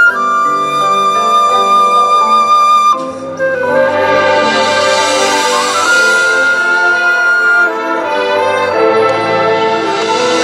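Marching band playing: woodwinds hold a high sustained note over soft chords, then after a short break about three seconds in the full band enters with low brass underneath and swells in a crescendo.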